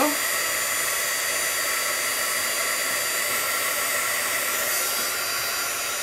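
Craft heat tool blowing hot air in a steady whir with a faint high whine, drying alcohol ink on a metal embellishment.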